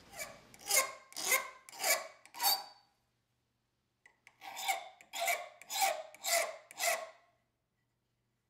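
Hand file rasping across a small wooden piece clamped in a bench vise: four strokes at about two a second, a pause of over a second, then five more strokes.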